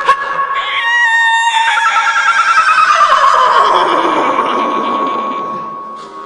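A woman's vocal imitation of a horse whinnying into a microphone: a high, trembling call about a second in, then a long cry that falls steadily in pitch and fades near the end.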